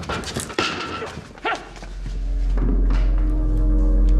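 A brief scuffle, with quick thumps and rustling and a woman's short strained cries, in the first second and a half. Then a deep low drone of dramatic film score swells up and holds.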